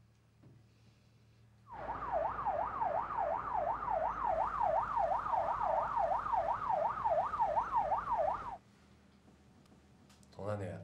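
Police car siren in its fast yelp, the pitch rising and falling about three times a second, over a steady rush of car noise. It starts abruptly about two seconds in and cuts off sharply about a second and a half before the end.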